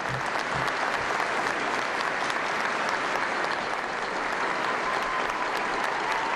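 A crowd applauding, a dense, steady clapping that holds at one level throughout.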